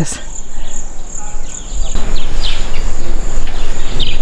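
Insects, crickets or similar, trilling in one steady high drone. From about halfway a louder low rumbling noise comes in, with a few short chirps over it.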